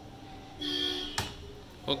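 A man's drawn-out "uh" of hesitation at one steady pitch, then a single sharp click a little over a second in, from the computer set-up he is working at.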